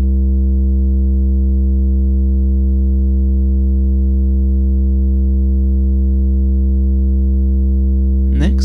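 kNoB Technology η Carinae analog VCO Eurorack module putting out a steady, unmodulated low drone: a square-like wave rich in harmonics, holding one pitch and level throughout.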